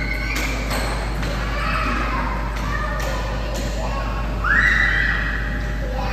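A young child's voice babbling and calling out without words, with one long high squeal past the middle.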